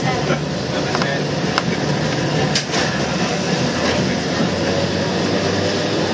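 Vintage English Electric tram running along street rails, with a steady motor hum, wheel-on-rail rumble and a few sharp clicks in the first three seconds.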